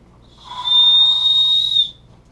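A small whistle blown once, giving a single steady high note about a second and a half long with a breathy edge and a fainter lower tone beneath it.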